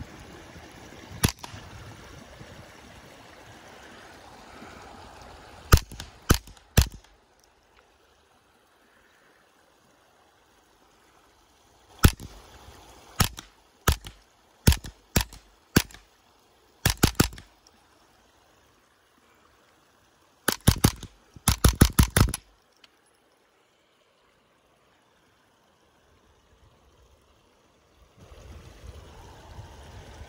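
Suppressed Ruger 10/22 short-barreled rifle firing .22 LR semi-automatically: about twenty shots in uneven strings, the last a quick run of about seven shots.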